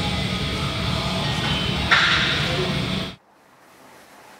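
Steady room hum of a gym's ventilation with faint background music, and a short hiss about two seconds in. A little after three seconds the room sound cuts off abruptly, leaving only faint music.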